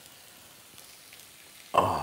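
Faint, steady sizzling of a steak, just cooked to well done, on the hot ridged plate of an open T-fal OptiGrill. A man's voice comes in near the end.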